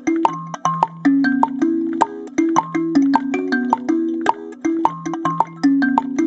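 Wooden-bodied kalimba with steel tines plucked by both thumbs, playing a repeating ternary pattern on the 6/8 Afro-Cuban clave in E major, each note ringing on under the next. A woodblock struck by foot keeps the beat underneath.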